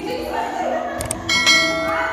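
YouTube subscribe-button sound effect laid over background music: a mouse click, a second click about a second later, then a bell ding that rings on.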